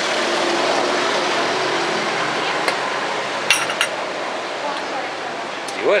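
Wooden-free plastic chess pieces being set down on a vinyl board and a digital chess clock being tapped during a blitz game: a few sharp isolated clicks, with a quick cluster of clicks and a brief ringing clink a little past the middle. All of it sits over a steady wash of street and bar background noise.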